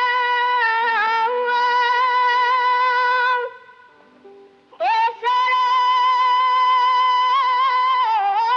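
A boy soprano sings long, high held notes with a wavering vibrato. The first note breaks off about three and a half seconds in; after a short gap with faint lower notes, the voice slides up into another long held note.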